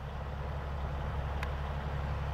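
An engine idling: a steady low rumble, with one faint click about one and a half seconds in.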